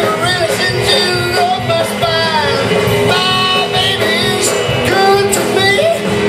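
A live band playing loud, steady rock and roll: electric guitar and upright bass with drums, and a sung lead vocal.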